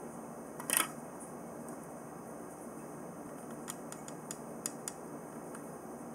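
Small gemstone pieces and a clear plastic frame handled on a tabletop: a short rustle just under a second in, then a few faint light clicks, over a steady background hiss.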